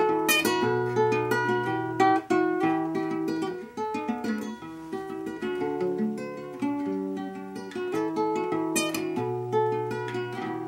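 Classical guitar being fingerpicked solo: a continuous run of plucked single notes over held bass notes.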